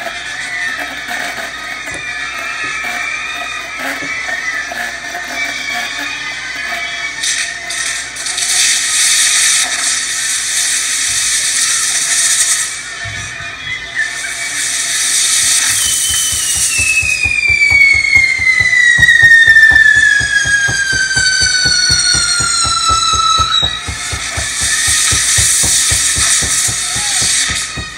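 Fireworks on a torito, a frame carried on a man's shoulders, hissing as they spray sparks, with a long whistle that falls steadily in pitch through the second half. Band music with a steady drum beat plays underneath.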